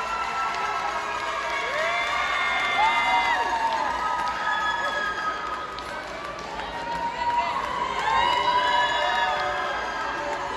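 A small crowd cheering and whooping, with several high voices holding long shouts that overlap, swelling about two seconds in and again near the end.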